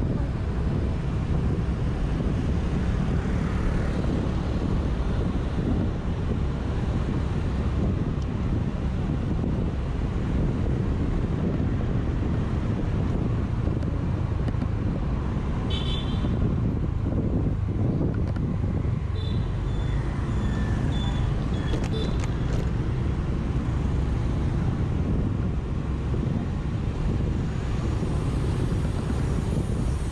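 Steady low rumble of riding a Honda motor scooter through city traffic: wind on the microphone over the scooter's small engine and the surrounding traffic. A few short, high horn beeps come around the middle.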